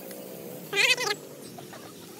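A single loud animal call, about half a second long, with a wavering pitch, a little under a second in.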